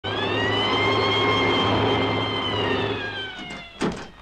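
Ambulance siren holding one steady wail, then sliding slowly down in pitch as the ambulance pulls up and stops, over the low hum of its engine, which cuts out about three and a half seconds in. A single sharp clunk comes just before the end.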